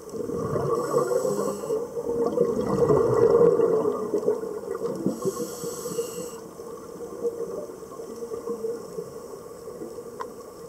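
Scuba regulator breathing underwater: a long bubbling rumble of exhaled air over the first four seconds, with two short high hisses, about a second in and about five seconds in.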